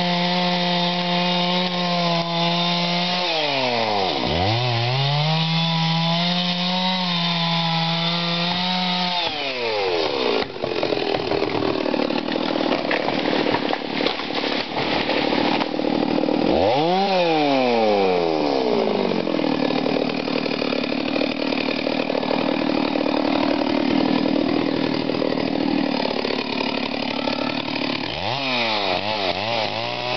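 A chainsaw cuts steadily under load through a tree trunk, its revs dipping and recovering once. About ten seconds in the saw drops away and the felled tree comes down, with several seconds of cracking and crashing through branches. The saw is then revved up and down, runs on, and is revved again near the end.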